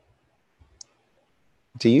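A single short computer mouse click a little under a second in, among a few faint low thumps in an otherwise quiet stretch. A man's voice starts near the end.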